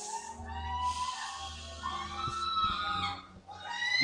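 Soft background music, with faint wavering voices from the congregation underneath.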